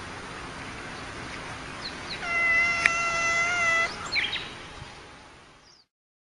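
Domestic tabby cat giving one long, steady-pitched yowl of under two seconds about two seconds in, followed by a few short high squeaks.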